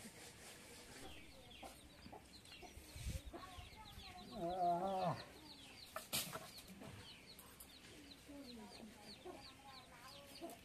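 Domestic chickens calling: a run of short, falling peeps, with a louder, wavering call about four and a half seconds in. A single sharp knock comes about six seconds in.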